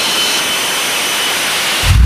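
F-35B Lightning II's F135 jet engine running at high power on the ship's deck: a loud, steady rushing noise with a faint whine, and a deep rumble coming in near the end.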